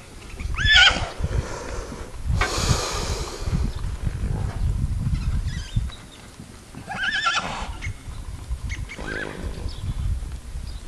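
A horse whinnying: a loud call about half a second in, another at about seven seconds, and a shorter one near nine seconds. A brief rush of noise comes between the first two calls.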